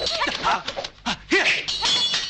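Short, sharp fighting shouts and grunts in quick succession, mixed with the swish and knock of blows in a dubbed kung fu sword fight, and a brief ringing clang of swords near the end.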